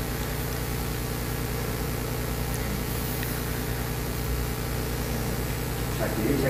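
Steady room tone: a low, even hum under a light hiss, with no speech and no sudden sounds.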